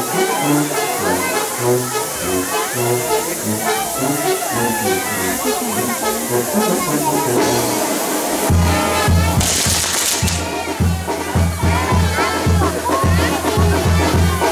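Brass band music with a deep bass line that turns into a strong, evenly repeating beat about eight and a half seconds in, over the hiss of the burning fireworks tower's spark fountains, with a brief louder rush of hiss about two-thirds of the way through.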